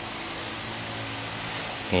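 Steady background hiss with a faint low hum underneath, even throughout with no distinct event.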